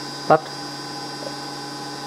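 Steady electrical hum made of several unchanging tones, from the running CRT display equipment.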